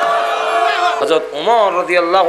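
Speech only: a man preaching in a drawn-out, half-sung delivery. A held tone gives way to spoken syllables about a second in.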